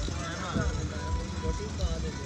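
People talking casually at conversational distance, with a steady low rumble underneath.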